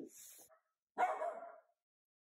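A miniature dachshund barks once, a short bark about a second in.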